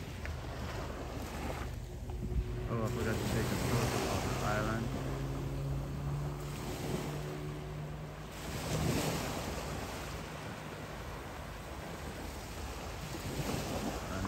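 Surf washing on a sandy beach, with wind buffeting the microphone. Brief distant voices come in a few seconds in, and a steady low drone runs through the middle for about five seconds.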